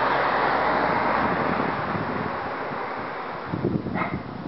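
Street traffic: a car driving past, its engine and tyre noise fading away as it moves off, with some wind on the microphone near the end.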